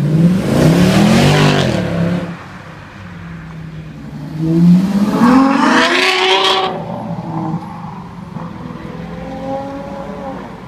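Two high-performance cars accelerating hard past on a street. First a Mercedes-AMG C63 coupé's V8 revs up and fades in the first two seconds. Then a Ferrari FF's V12 pulls away with rising pitch from about four to nearly seven seconds, the loudest part, followed by a lower engine rumble.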